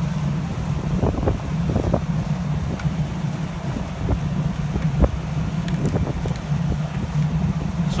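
Steady low engine drone, like a running generator or motor, with a few faint knocks and handling clicks over it.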